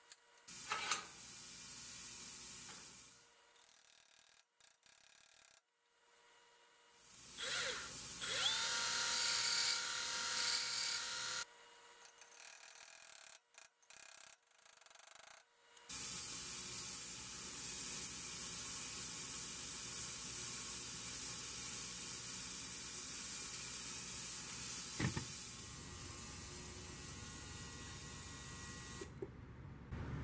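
An electric power tool running in short, cut-together stretches. About eight seconds in, the motor spins up to a steady whine. A longer steady run follows, with one sharp knock partway through, and it stops just before the end.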